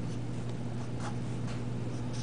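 Felt-tip marker pen drawing a few short tick strokes on paper, over a steady low electrical hum.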